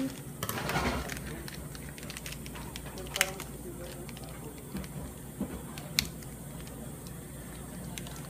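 Crinkling and rustling of a small plastic Shopkins blind-bag wrapper being handled and picked open by hand, with a couple of sharp crackles about three and six seconds in.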